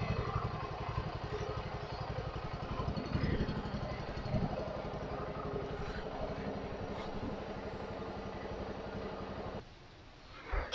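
TVS XL100 moped's small single-cylinder four-stroke engine idling steadily, an even rapid putter.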